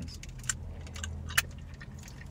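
Low steady hum inside a car, with a few short sharp clicks and light rattles over it, the loudest about a second and a half in.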